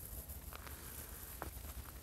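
Faint footsteps: a few soft scuffs and ticks, about half a second in and again around one and a half seconds, over a low steady rumble.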